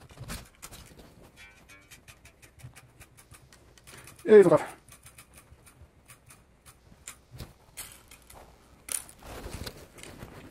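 Bass strings being unwound at the tuning pegs of an Ibanez SR300M bass to take them off: a string of small irregular clicks and ticks, busiest in the first two seconds and again in the second half.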